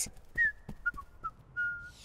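Whistling: a short falling note, then a few brief notes, and a longer steady note near the end.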